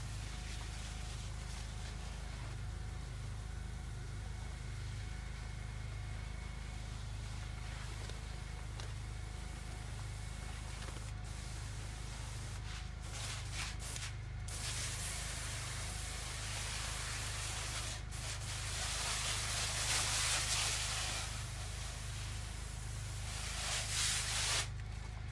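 Hose-fed pressure sprayer wand hissing as it sprays the cabbage plants, louder from about halfway through and loudest near the end, over a steady low rumble.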